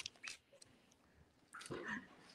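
Near silence, broken by two faint clicks in the first half second and a faint, short voice-like sound near the end.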